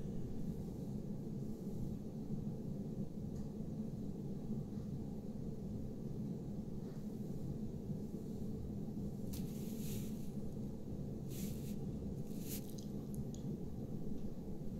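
Quiet, steady low background hum of room tone, with a few brief soft rustles in the second half.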